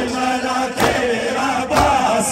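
A group of men chanting a noha (Shia mourning lament), with sharp rhythmic strikes about once a second, typical of matam chest-beating in time with the chant.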